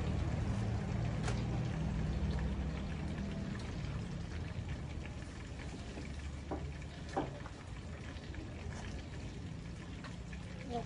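A low, steady engine hum that fades away over the first few seconds, under an even hiss, with two or three light clinks of kitchen utensils about six and a half to seven seconds in.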